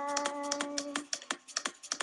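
Rapid, sharp clicking, several clicks a second. For about the first second a steady held note with overtones sounds under it, then the note stops.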